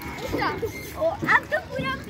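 Young children's voices calling out in a few short bursts, one of them rising high about a second in.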